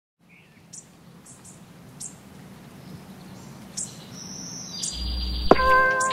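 Birds chirping over a faint low hum, fading in from silence and getting louder. Near the end a high steady tone and a deep bass note come in, and music with sharp, ringing plucked notes starts.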